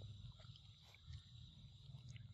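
Faint, wet smacking clicks of a long-tailed macaque chewing papaya close to the microphone, over a low rumble and a steady high drone.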